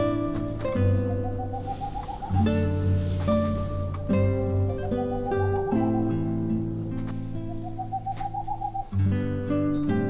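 A boreal owl's song, a quick run of hoots rising slightly in pitch and lasting about a second and a half, heard three times. Acoustic guitar background music plays throughout and is the loudest sound.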